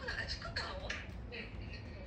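Pen writing on a small hand-held card: a string of short scratches and taps, mostly in the first second, with faint speech.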